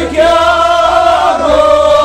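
Kashmiri Sufi song: a male lead singer and other men's voices sing one long held note together over a harmonium.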